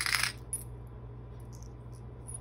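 Small metal craft charms clinking against each other and the plastic compartment box as a hand picks through them. It is a brief cluster of clinks at the start, with a light click just after and a few faint ticks later.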